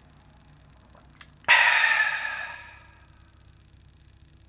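A man's loud, breathy "aah" of satisfaction just after a swallow of drink. It starts suddenly about a second and a half in and trails off over a second and a half, after a faint click.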